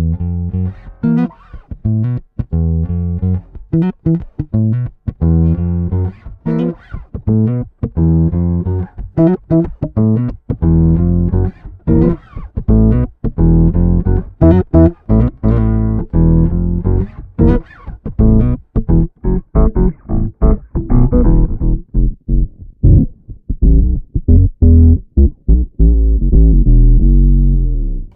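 Electric bass played through a Boss OC-5 octave pedal with its upper octave added to the notes: a busy run of plucked notes, ending on a long held low note.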